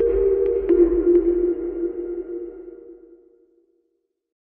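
Closing theme music: a held electronic chord with a few short pings about a second in, fading out over about three seconds.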